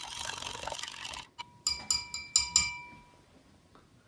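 A metal spoon stirring baking soda into water in a drinking glass, scraping and clinking against the glass for about a second, then stopping suddenly. Then the spoon is tapped on the glass rim about four times, each tap ringing.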